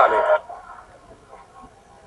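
A man's narration in Italian ends about half a second in. Then there is a pause with only faint background noise.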